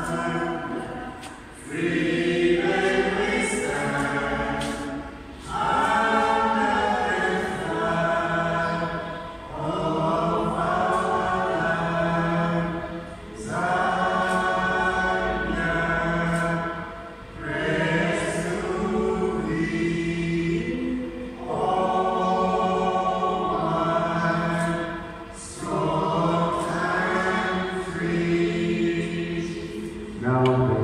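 A group of voices singing a national anthem together in sustained, choir-like phrases, with a short break between lines every three to four seconds.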